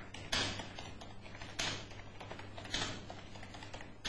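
Typing on a computer keyboard: a run of light key clicks, with three louder key strikes about a second and a quarter apart.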